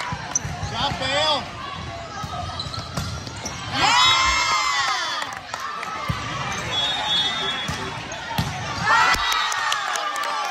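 Live game sound of an indoor volleyball rally: the ball slapping off hands and arms, with players' shouted calls, the loudest about four seconds in, echoing in a large gym.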